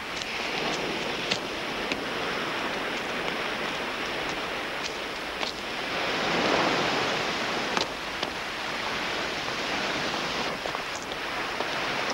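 Ocean surf washing onto a shore: a steady rushing hiss of water that swells to its loudest about six to seven seconds in, with a few small scattered clicks.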